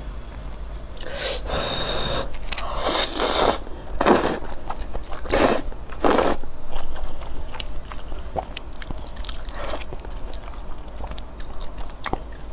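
Close-miked slurping of soft noodles in sauce with chopsticks: a run of long wet slurps in the first half, then quieter chewing and small mouth clicks.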